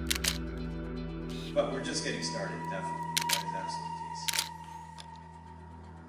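Camera shutter clicks over background music with long held notes: a quick double click at the start, another pair about three seconds in, and a single click a second later. The music grows quieter near the end.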